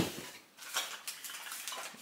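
Packaged glassware being handled: a knock at the start, then a run of small clicks and clinks of glass in its plastic packaging.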